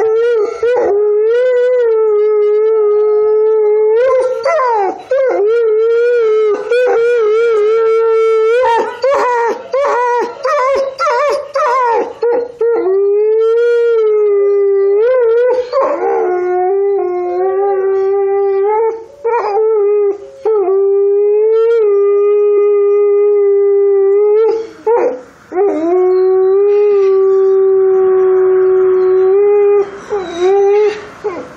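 Grey wolf howling: long howls held on a steady note, one after another with only brief breaths between. Between about four and thirteen seconds in, the howls break into quick wavering, yipping stretches.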